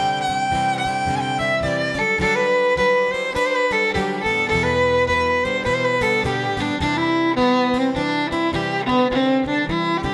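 Fiddle playing an instrumental break: long bowed notes with slides between them, over a steadily strummed acoustic guitar.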